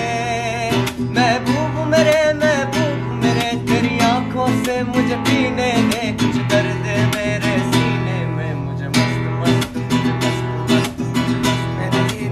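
Guitar strummed steadily in accompaniment, with a man singing over it in the first few seconds.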